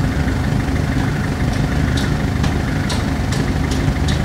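Engine of a truck-mounted aerial lift idling steadily, with a handful of light clicks in the second half.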